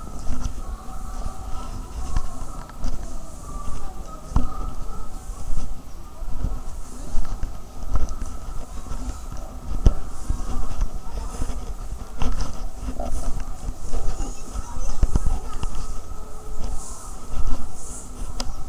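Outdoor ambience on a handheld microphone: an uneven low rumble with irregular knocks, and faint voices of people in the distance.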